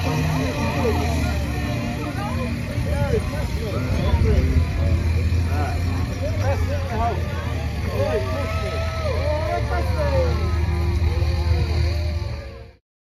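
A pickup truck's engine running with a steady low hum as it tows a parade float slowly past, under the chatter of many overlapping voices in a crowd.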